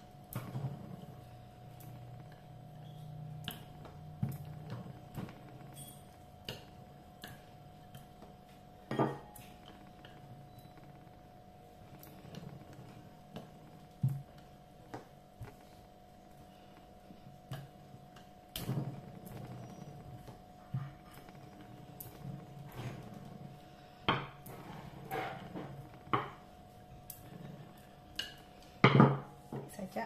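A wooden rolling pin rolling over bread dough on a wooden table, with scattered light knocks and clicks as the pin and hands meet the tabletop, several louder knocks spaced through.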